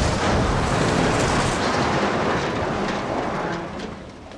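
A car crash and rollover in a film soundtrack: a loud, noisy rumble with a few scattered knocks that slowly dies away.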